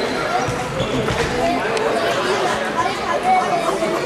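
Children's voices chattering, echoing in a large sports hall, with a few short sharp knocks from a ball or shoes on the wooden floor.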